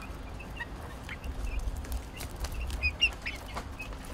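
A small flock of chickens, hens and chicks, clucking and chirping softly with short scattered calls as they peck at food scraps, with a few light clicks over a low rumble.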